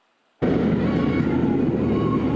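Silence, then a sudden cut-in about half a second in to a loud, steady outdoor rumble and hiss, like traffic or wind noise on a news crew's field microphone.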